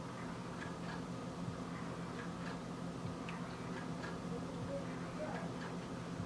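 Faint, uneven soft clicks, about two a second, over a low steady hum.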